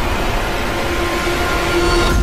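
Heavy, steady rumbling of a spacecraft cabin shaking through a rough descent, a film sound effect, with a held low tone over it that swells slightly near the end.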